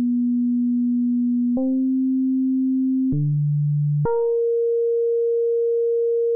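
Pure Data FM synthesizer playing a string of held notes: a nearly pure sine-like tone that steps to a new pitch three times, down low near the middle and ending on a higher note that holds. Each new note opens with a brief bright, buzzy attack that quickly fades back to the plain tone, as the envelope on the modulation index falls after each note is triggered.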